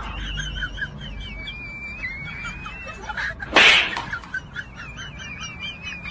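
Birds singing, with warbling phrases and short chirps throughout, and one short, loud burst of noise about three and a half seconds in.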